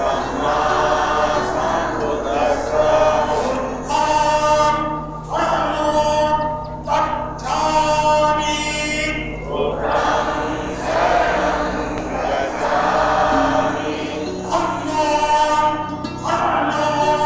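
Devotional song sung by a group of voices over musical backing, in long phrases of held notes.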